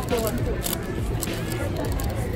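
Paper wrapper around a steamed bun crinkling a few times as it is handled, over steady outdoor city noise with faint voices.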